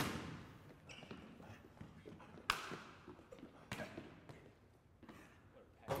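A basketball hitting the hardwood gym floor and players' hands during a passing play. There is a sharp hit at the start, then others about two and a half and nearly four seconds in, each ringing on in the echo of the large gym.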